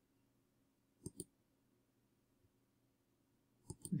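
Two pairs of short computer mouse clicks, about a second in and again near the end, as entries are picked from drop-down menus on a web page; the rest is near silence.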